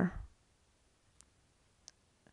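The tail of a spoken word, then quiet with two faint, short clicks, one about a second in and one near the end: a stylus tapping on a touchscreen while writing by hand.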